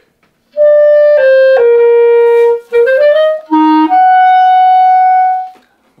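Solo clarinet playing a short phrase: three stepping notes downward, a quick run of short notes and a brief low note, then one long held note that tails off near the end. It is an exaggerated example of the habit of giving the note before a breath a little kick.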